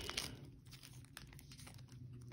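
Faint, scattered light clicks and rustles of trading cards and a cardboard box being handled.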